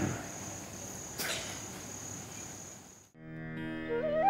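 Faint room tone with a steady high-pitched whine after the talking stops, and one short soft noise about a second in. Just after three seconds it cuts out and a sustained music drone fades in, the opening of the closing music.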